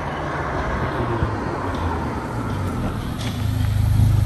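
Mercedes A45 AMG's turbocharged four-cylinder engine, with a stage 2 downpipe, running as the car drives up, its low exhaust note growing louder near the end as it closes in.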